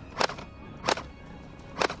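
Three sharp shots from a gel blaster rifle, unevenly spaced, over background music.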